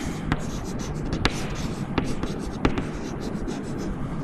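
Chalk writing on a chalkboard: scratchy strokes broken by several sharp taps as the chalk meets the board.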